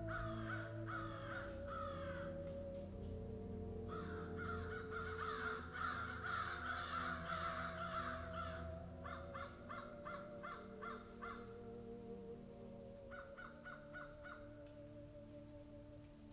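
Repeated harsh bird calls in bursts over a low sustained musical drone, the whole fading out toward the end.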